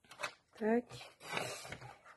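A sliding paper trimmer cuts a strip of metallic foil paper: a couple of clicks at the start, then a short scraping stroke of the cutter head along its rail about a second in. A brief spoken sound comes just before the stroke.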